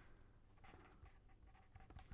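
Near silence, with faint scratching of a pen writing on paper.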